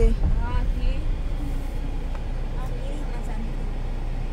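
Low, steady rumble of a minibus engine and tyres on a dirt road, heard from inside the cabin.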